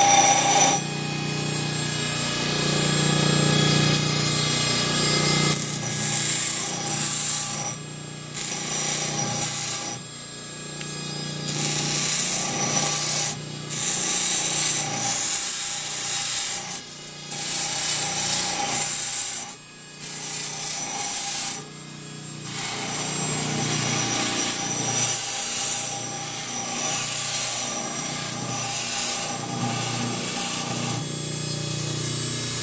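An electric grinding tool's motor running steadily, with repeated bursts of high grinding, each a second or two long with short breaks between, as antler is pressed to it and lifted off again.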